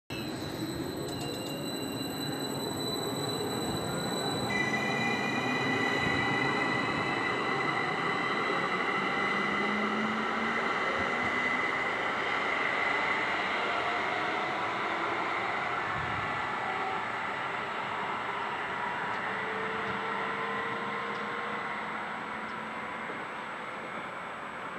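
Electric multiple unit pulling away and accelerating, its traction motors whining with a rising pitch over the first few seconds. It then settles into a steady high whine with the rumble of the running train, which slowly fades as it draws away.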